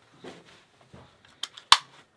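Soft rustling of clothes as baggy jeans are pulled on, then two sharp clicks near the end, the second louder, from a belt buckle being fastened.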